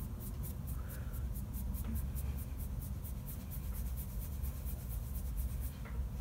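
Fingertips tapping and rubbing a cream blush serum into the cheek to blend it out: faint, quick scratchy taps, several a second, over a steady low hum.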